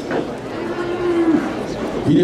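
A young Camargue bull lowing: one long, steady-pitched call of about a second that drops at its end.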